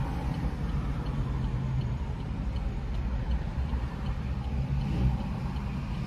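Car engine running, heard inside the cabin as a steady low hum and rumble.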